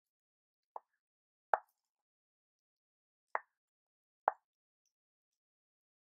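Chef's knife cutting through cherry tomatoes and striking a wooden cutting board: four short knocks, irregularly spaced about a second apart.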